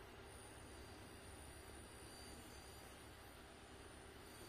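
Near silence: faint steady outdoor background hiss, with a thin, high, steady tone that comes in just after the start.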